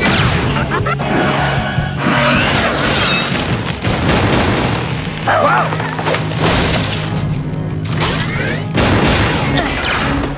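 Action music score under several booms and sci-fi blaster-shot effects from a slug-blaster gunfight, the bursts coming every couple of seconds.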